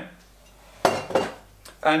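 Kitchenware clattering at the stove: a sharp knock just under a second in, ringing briefly, followed by a second, smaller clink.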